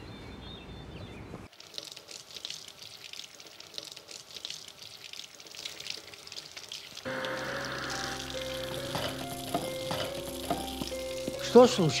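A steady crackling sizzle, like food frying in a pan, begins about a second and a half in. Film score with low held notes joins it about halfway, and a loud sweeping sound cuts across near the end.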